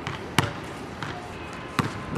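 Basketball bouncing on a hard outdoor court: two sharp bounces about a second and a half apart, with a fainter knock between them.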